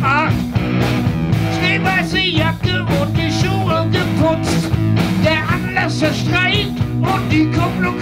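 Rock trio playing live: electric guitar, bass guitar and a Yamaha drum kit, with a steady bass line and regular drum beat under a high lead line of wavering, bending notes.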